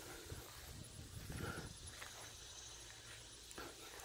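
Faint, quiet outdoor background with soft, low thuds of footsteps on a grass lawn.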